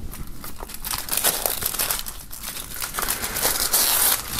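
Thin plastic shrink-wrap being peeled and pulled off a CD jewel case: crinkling and crackling that grows louder near the end as the film comes away.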